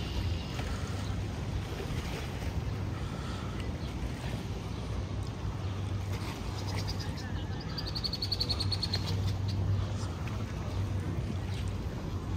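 Outdoor lakeside boardwalk ambience: a steady low hum, faint voices of people nearby, and a short high-pitched chirping about eight seconds in.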